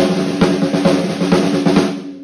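Drum kit played with sticks: a run of quick strokes on the snare drum over kick drum beats about twice a second, under a cymbal wash, stopping just at the end and ringing out briefly.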